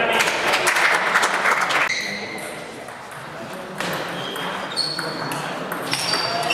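Voices in a sports hall over the first two seconds, then from about four seconds a table tennis rally: the ball clicking off bats and table, with short high squeaks of shoes on the hall floor.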